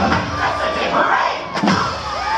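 Parade music coming to its finish while voices shout and a crowd cheers.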